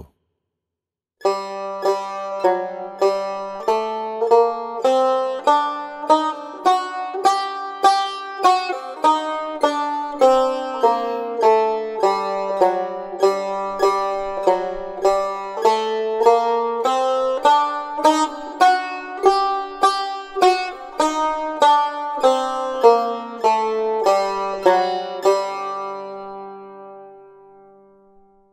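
A Persian tar played solo, an elementary exercise picked out as a slow, evenly paced melody of single plucked notes, each ringing and dying away. The playing starts about a second in and fades out near the end.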